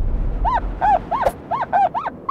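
Cartoon seal character's voiced calls: a quick run of short, high, squeaky calls, each rising and falling in pitch, about three a second.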